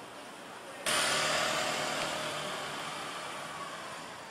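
Outdoor traffic noise with a motor vehicle engine running. It comes in abruptly about a second in, slowly fades, and is cut off just before the end.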